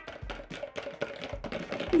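Eggs and sugar being whisked in a bowl until foamy: a quick, irregular run of clicks and taps as the whisk strikes the bowl.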